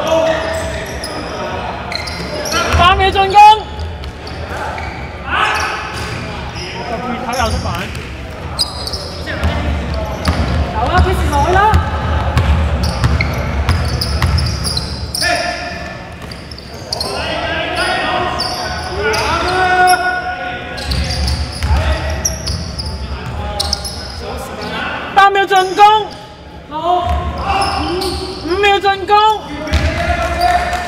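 Basketball game sounds in a large indoor gym: the ball bouncing on the wooden court and players calling out, echoing around the hall.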